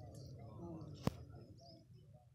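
Birds chirping in short high calls over faint murmuring voices, with one sharp click about a second in, the loudest sound.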